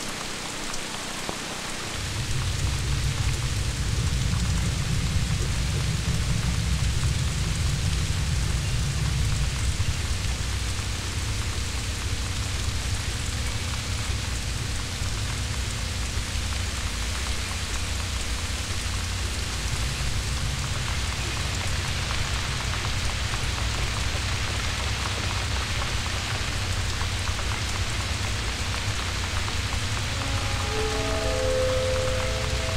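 Heavy rain pouring steadily against windows. A deep, low rumble comes in about two seconds in and carries on under the rain.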